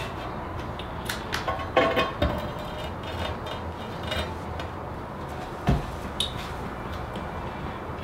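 Large porcelain floor tile being laid into place on the floor: a few light clinks and scrapes with brief ringing about two seconds in, then a dull knock just before six seconds.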